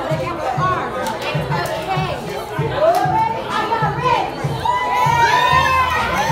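A crowd of women shouting and cheering excitedly over music with a steady beat. The long, rising shouts grow louder in the last second or so.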